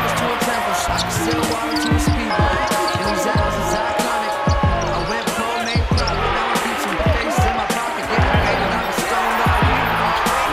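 A basketball bouncing on a hardwood court, repeated thuds of dribbling, heard over a music track with a steady low beat.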